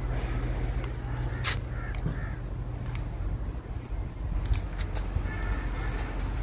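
A few short bird calls, in the manner of crows cawing, over a steady low outdoor rumble, with a few sharp clicks.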